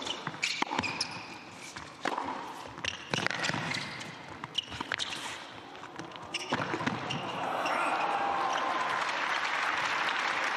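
Tennis ball struck back and forth by racquets in a rally on an indoor hard court, with the short squeak of shoes between shots. The point ends and the audience applauds from about six and a half seconds in.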